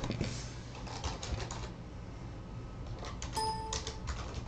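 Computer keyboard typing: quick clusters of key clicks, then a short electronic beep about three seconds in.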